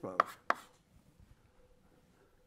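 Chalk striking a blackboard: two sharp taps in quick succession within the first half-second, as a word is written on the board.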